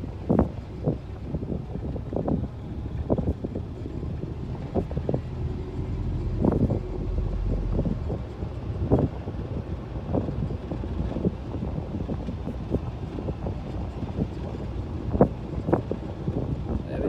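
Car driving over broken, potholed asphalt: a steady low rumble of tyres and wind, broken by irregular knocks and thumps as the wheels hit the cracks and holes.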